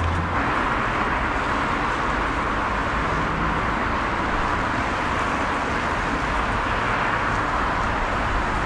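Steady road traffic noise from a busy street, an even hum of passing cars.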